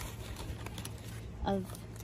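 Faint rustling and handling of torn paper egg carton pieces pulled from a plastic zip-top bag.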